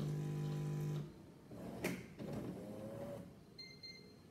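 Jura Z6 coffee machine's pump humming steadily during its cleaning programme, cutting off about a second in. Then a sharp click, some faint mechanical noises, and a short high electronic beep near the end.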